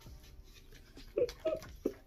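A woman making three short, high, wordless vocal squeals in excitement, in quick succession about a second in.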